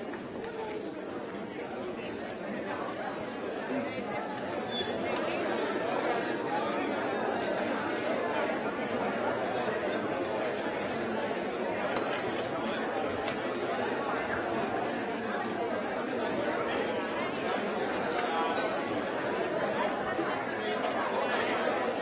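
Hubbub of a large audience talking all at once in a hall as it breaks for the interval, no single voice standing out. The chatter grows a little louder a few seconds in.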